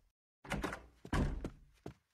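Cartoon sound effect: a brief rustle about half a second in, then a heavy, dull thunk a little after one second.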